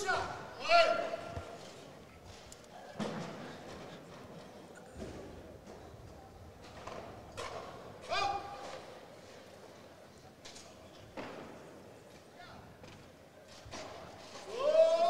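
Quiet weightlifting-hall ambience with a few short shouts of encouragement and scattered dull thuds, as a lifter sets up over a loaded barbell and pulls a clean near the end.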